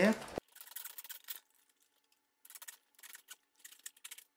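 Small hand hacksaw sawing into the plastic body of a toy telehandler, in quick scraping strokes. The sawing comes in two runs, with a short pause about a second and a half in.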